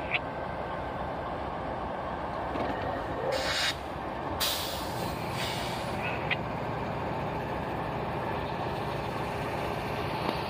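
CSX freight train at a grade crossing, a steady rumble with two bursts of air-brake hiss about three and a half and four and a half seconds in.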